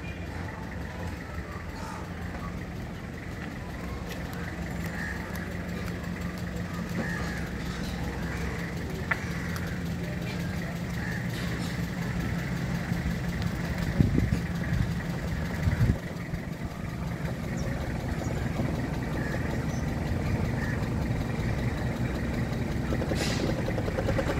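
Toyota Qualis 2.4-litre four-cylinder diesel engine running at low revs as the vehicle reverses slowly toward the listener, its steady hum growing gradually louder as it closes in. A couple of brief low thuds come past the middle.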